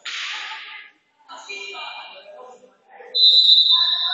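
Referee's whistle blown once, a long steady shrill blast starting about three seconds in, the loudest sound here. Before it, players' shouts and calls.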